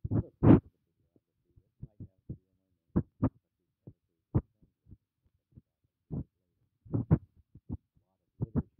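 A voice coming through in short, broken fragments, a syllable or so at a time with silent gaps between, the loudest about half a second in.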